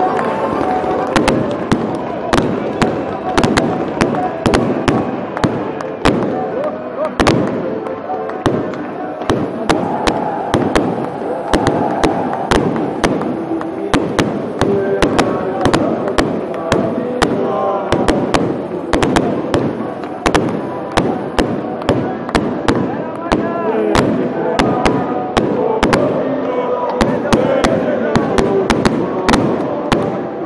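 Fireworks going off in a fast, irregular string of sharp bangs and crackles, several a second, over the voices of a large crowd.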